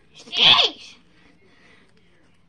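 One short, loud burst from a person's voice about half a second in: breathy and hissy at the start, then falling in pitch.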